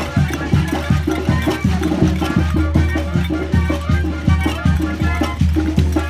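Live Mexican banda brass band playing, with a tuba bass line under a brass melody and a steady percussion beat.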